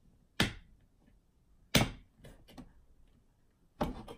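Pull-ring lid of a steel food can being levered up and peeled back by hand: three short, sharp sounds spread over a few seconds, the last near the end.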